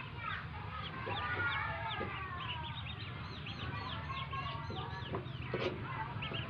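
A brood of newly hatched ducklings peeping in chorus: many short, high chirps overlapping without a break.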